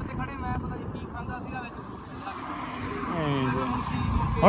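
A man's voice speaking, fainter and farther off than the main narration, in short phrases over a steady background hiss of outdoor noise.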